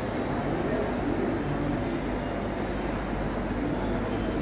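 Steady background ambience of an indoor food hall: a constant low rumble with faint, indistinct voices in the distance.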